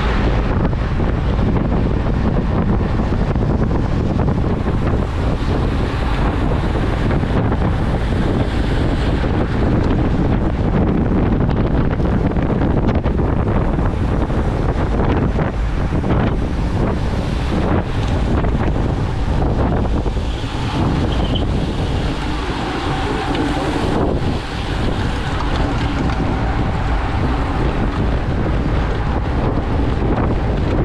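Wind buffeting the microphone of a camera on a bike at racing speed, a loud steady rush of noise that eases a little after about twenty seconds as the pace drops.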